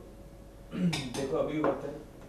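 Metal cutlery and dishes clattering in a kitchen, with a few sharp clinks starting about two-thirds of a second in, mixed with a voice.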